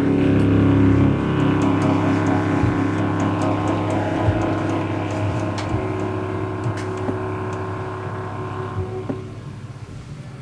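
A small live band's closing held chord, with contrabass clarinet, guitar and upright bass, rings out and fades gradually over about nine seconds. A few light taps sound through it, and it has almost died away near the end.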